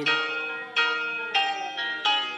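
Instrumental backing music between sung lines: four struck chords in two seconds, each ringing and dying away before the next.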